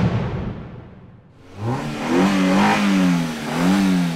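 A sudden loud hit that dies away over about a second, then a sports car's engine revving, its pitch rising and falling twice.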